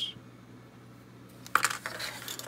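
Plastic model-kit sprues clicking and clattering against a tabletop as the parts trees are handled, a quick cluster of light knocks about a second and a half in.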